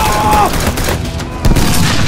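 Battlefield gunfire: many rapid rifle shots overlapping, with a sudden louder boom about one and a half seconds in.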